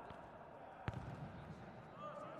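A futsal ball struck on a hard indoor court: one sharp thud about a second in, with a fainter touch at the start, over a low, hollow arena background.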